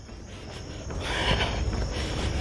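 Crickets chirping steadily in the background. From about a second in, a louder rustling with a low rumble joins them.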